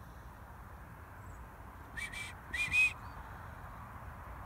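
Two short whistles, the second louder and ending a little higher, given as whistle commands to a herding sheepdog working sheep.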